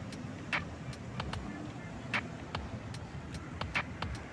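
Steady rumble of road traffic, with sharp footstep taps on pavement falling in a regular walking rhythm, a louder one about every second and a half.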